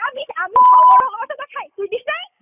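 A single steady electronic beep, about half a second long, cutting in and out abruptly over phone-call speech.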